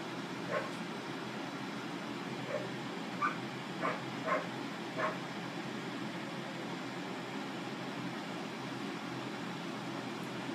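A steady low room hum with about six short, high yips scattered through the first five seconds, an animal's voice in the background.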